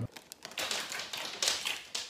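A deck of playing cards springing out of the hand in a cascade: a rapid, fluttering run of card clicks starting about half a second in.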